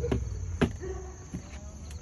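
Steady high-pitched chirring of insects, with a few light knocks in the first second as a wooden picture frame is set down on a folding table.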